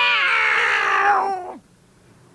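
Two puppeteers' voices yowling a long, drawn-out cat's "miauw" together, the pitch sinking slowly before it stops about one and a half seconds in.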